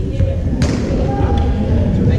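Sports hall noise: people's voices and a low steady rumble, with a sharp knock a little after half a second in.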